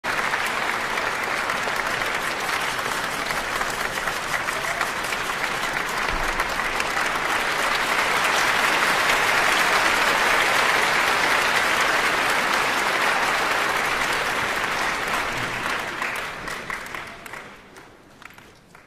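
Audience applauding: dense clapping that swells toward the middle and dies away near the end.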